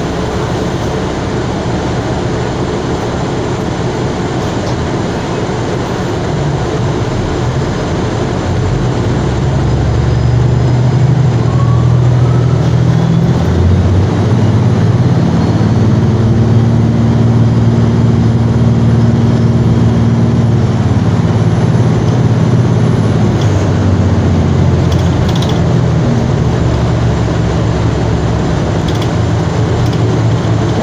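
Cabin ride noise of a 2020 Gillig BRT hybrid-electric transit bus under way: a steady rush of running noise with a low drivetrain hum. It grows louder about ten seconds in and holds a low drone through the middle.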